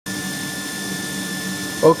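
Injection moulding machine humming steadily, a constant machine drone with several steady tones in it. A man starts speaking near the end.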